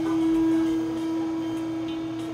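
Steady, even-pitched mechanical hum from the slingshot ride's machinery while the capsule waits before launch.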